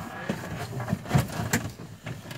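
A few separate knocks and clicks from a person climbing into and settling in a seaplane's pilot seat, before the engine is started. The loudest knock comes a little past the middle.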